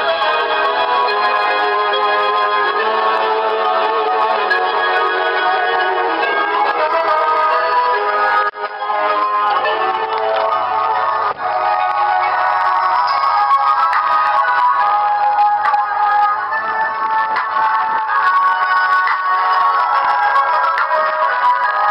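Loud music played through Pyle marine speakers mounted in a car's front grille, mostly mids and highs with little bass, starting right at the outset. The sound dips briefly twice, about eight and eleven seconds in. The owner finds the speakers get a little distorted from low frequencies.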